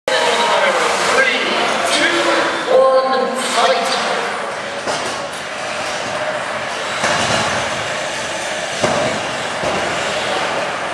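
Combat robots fighting in an arena: a few sharp knocks of the machines hitting each other, about five, seven and nine seconds in, over steady crowd chatter and shouting.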